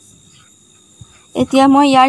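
Faint, steady high-pitched trilling of crickets, then a woman starts speaking about a second and a half in.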